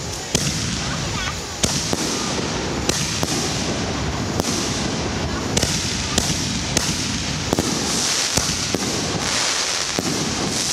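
Chain-fused Excalibur canister shells firing from mortar tubes one after another: about a dozen sharp thumps and bangs, a second or less apart, over a continuous hiss and crackle.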